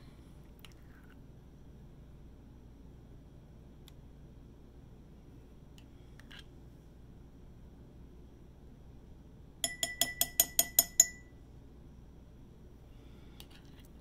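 A spoon rapped quickly against the rim of a glass jar, about ten ringing clinks in a second and a half, a little past the middle, knocking off clinging soap paste. Otherwise only faint handling clicks.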